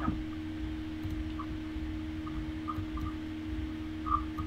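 A pause in a video call: a steady low electrical hum over faint hiss and rumble, with a few faint brief blips.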